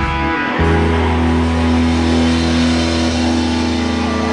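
Live rock band's distorted electric guitars and bass sounding a loud, sustained chord. The chord changes about half a second in, then holds steady and rings on without a clear drumbeat.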